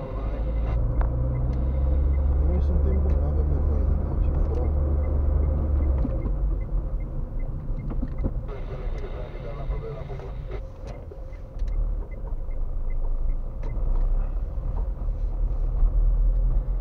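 Car engine and road rumble heard from inside the cabin while driving slowly through town; the rumble is heaviest for the first six seconds, then eases. A faint regular ticking comes and goes.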